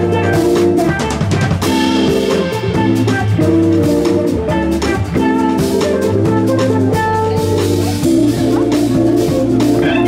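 Live jazz-funk organ trio playing a groove: Hammond organ chords, electric guitar and drum kit.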